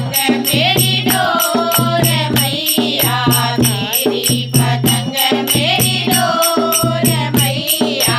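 A group of women singing a devotional bhajan in unison, accompanied by a dholak hand drum and hand-clapping keeping a steady, even beat.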